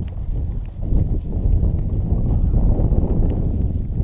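Wind buffeting the phone's microphone: a steady, loud low rumble, with a few faint clicks.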